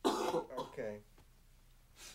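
A person clearing their throat once: a sudden raspy burst, then a short voiced sound that falls in pitch, over within about a second, followed by quiet room tone.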